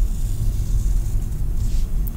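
Steady low hum of background room noise, with a faint short hiss near the end.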